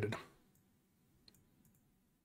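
A few faint computer mouse clicks in a quiet room, after the tail end of a spoken word.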